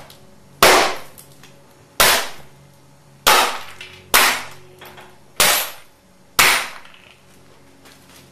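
A long-handled tamper with a flat metal foot pounded down onto cardboard laid over a hard floor: six heavy blows at uneven intervals about a second apart, each ringing briefly in the room.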